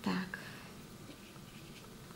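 Faint brushing of a watercolour brush on kraft paper, after a brief voiced sound at the very start.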